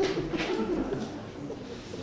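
Low, indistinct murmured voices, loudest in the first second or so, then fading to a quieter background murmur.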